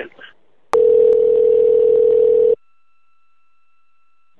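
A click on the telephone line, then a steady telephone tone for about two seconds that cuts off abruptly, leaving a faint, higher steady tone.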